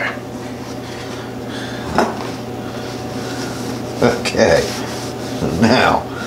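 Kitchen handling noises as marinated beef strips are lifted from a ceramic bowl with tongs onto paper towels: a sharp click about two seconds in, then clinks and rubbing from the tongs and bowl twice in the second half, over a steady low hum.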